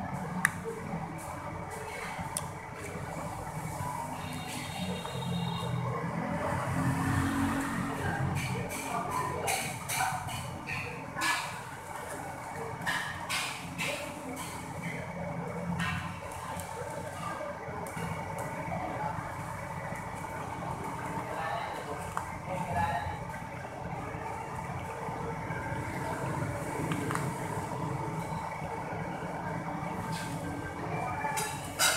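Eating sounds: chewing and crunching of crackers with the mouth close to the microphone, with short clicks and crunches that cluster a third of the way in, over a steady background hum.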